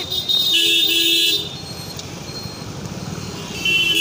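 A vehicle horn honks for about a second, then gives a shorter honk near the end, over the running noise of street traffic.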